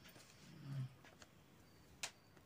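Near silence with faint ballpoint pen scratching on paper, a brief low hum a little past halfway, and a few faint ticks.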